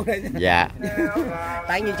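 People talking over each other, with one voice holding a long, drawn-out call on a steady pitch for nearly a second in the middle.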